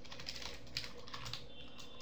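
Computer keyboard typing: a run of faint, irregularly spaced key clicks.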